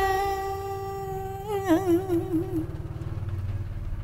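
A chanter's voice in Vietnamese poetry recitation (ngâm) holds a long note for about a second and a half, then wavers in a short trill and trails off. A low steady hum continues underneath after the voice fades.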